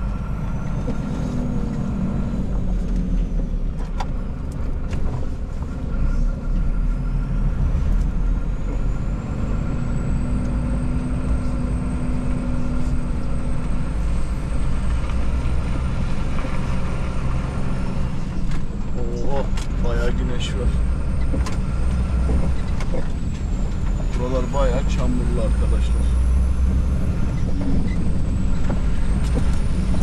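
Truck's diesel engine running under light load as the rig drives slowly, heard from inside the cab as a steady low rumble.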